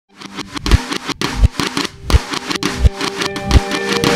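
Symphonic alternative rock music with guitar over a steady low drum beat, about three beats every two seconds. Held notes come in near the end.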